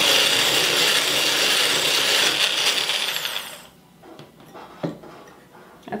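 Electric immersion blender with a whisk attachment running in a glass jar, whipping cultured cream that is nearing soft peaks. It runs steadily for about three and a half seconds, then is switched off and winds down, with a light click about a second later.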